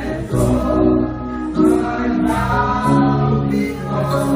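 A women's gospel worship group singing in harmony through microphones and a PA, holding long notes over low sustained accompaniment with a steady beat.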